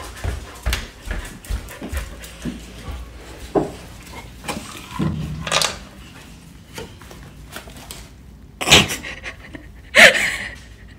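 A dog panting, with scattered small clicks and knocks and a short, louder burst near the end.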